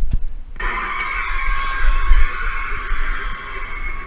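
Mr. Dark Halloween animatronic activating: its built-in speaker plays a harsh, hissing, rushing sound effect that starts suddenly about half a second in and keeps going, with a low rumble underneath.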